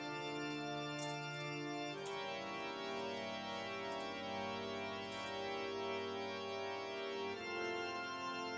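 Instrumental music: an organ holding slow, sustained chords, changing chord about two seconds in and again near the end.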